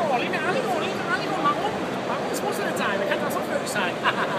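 A man talking over the chatter of a crowd of people in a busy hall.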